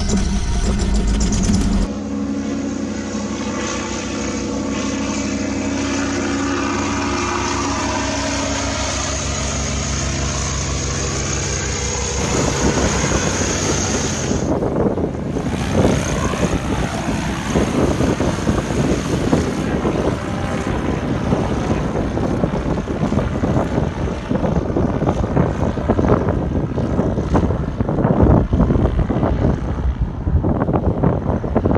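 Mini ultralight trike's Briggs & Stratton engine and propeller running at a steady pitch. About twelve seconds in, the sound turns louder and rougher as the trike is heard in flight.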